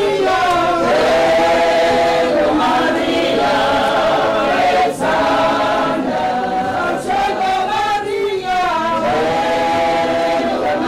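A group of voices singing a hymn together in harmony, with long held notes that change every second or two.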